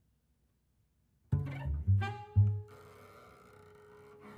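A jazz trio of saxophone, cello and double bass starts playing about a second in. Three sharp low notes come in quick succession, then a long held higher note.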